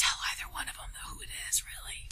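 A person whispering quietly in a small room; the whispered words cannot be made out.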